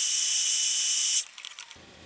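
Electric heat gun running, a steady hiss of blown air with a thin high whine, as it heats the plastic of a headlight housing to soften it. It stops abruptly just over a second in.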